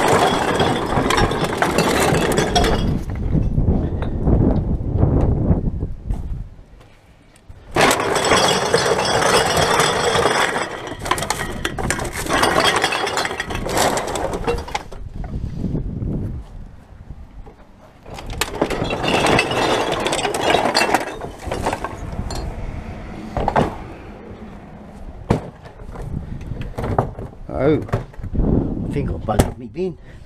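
A heavy wheelie bin full of plastic bottles and cans being tipped out, the containers clattering and clinking as they slide out in three long rushes with pauses between, then scattered single clinks near the end.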